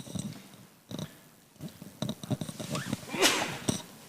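Low, indistinct murmuring of people conferring quietly near a microphone, in short broken fragments. A louder rustle or breath on the microphone comes about three seconds in.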